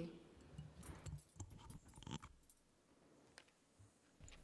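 Near silence: hearing-room tone with a few faint, indistinct short sounds, after a last spoken word at the start.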